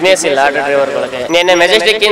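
Speech only: a man talking in Kannada.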